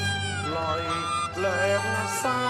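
Cantonese opera accompaniment: a bowed string instrument plays a melody with sliding pitch over sustained low notes.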